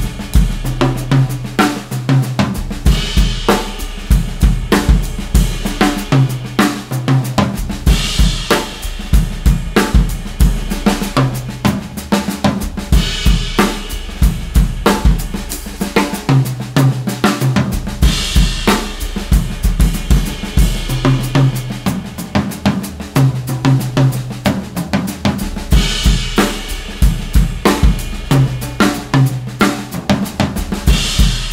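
A Pearl President Deluxe drum kit with Soultone cymbals, played in a free paradiddle-based groove. Stick strokes move around the snare and toms with bass drum underneath, with a cymbal crash every few seconds.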